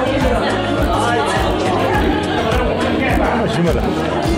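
Music with a steady beat playing under the chatter of many people talking in a large hall.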